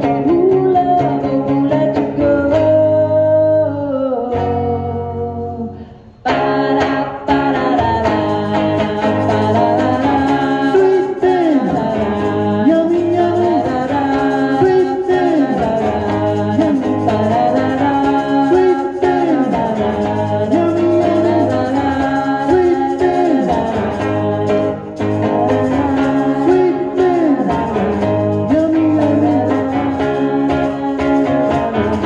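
Live song: a woman singing over an electric guitar played through an amplifier. About four seconds in, the music fades almost to nothing, then comes back in abruptly about two seconds later and carries on.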